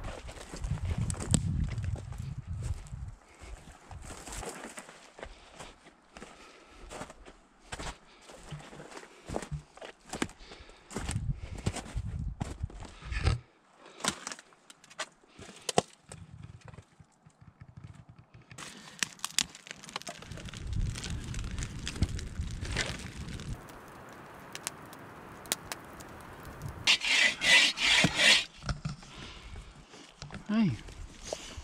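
Irregular crunching, rustling and knocking, like footsteps on dry ground and snow and gear being handled, with low rumbles on the microphone at times. Near the end comes a quick run of sharp, hissing puffs.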